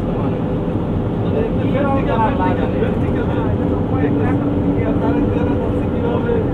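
Steady engine and road noise inside a moving vehicle's cabin, with people's voices talking over it.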